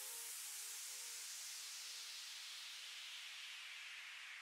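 A quiet white-noise sweep falling in pitch, the kind of downlifter effect used in an electronic dance music breakdown, with a few faint synth notes fading out in the first second or so.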